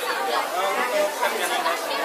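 Speech only: two men talking in Indonesian, a question followed by the start of its answer.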